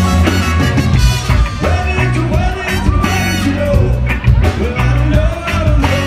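Live band playing amplified rock music, with electric guitars, bass and drums, and a voice singing over them.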